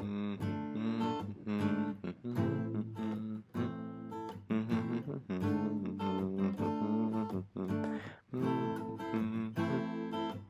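Steel-string acoustic guitar strummed in a down-up-down-up-down pattern, alternating between A minor and E minor chords, with short pauses between groups of strums.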